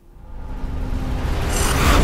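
Logo theme music swelling up from quiet, with a rising whoosh that peaks near the end over a heavy bass.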